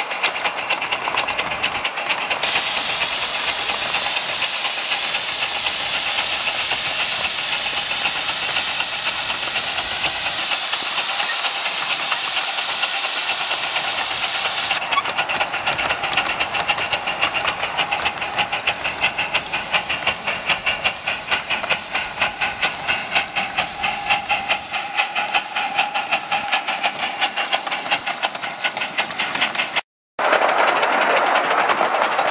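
Miniature live-steam locomotive running, its exhaust beating in a rapid, even rhythm, with a loud steady hiss of steam from about two seconds in until about halfway.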